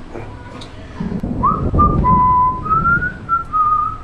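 A man whistling a short tune of a few held notes, starting about a second and a half in, over a rush of low, breathy noise.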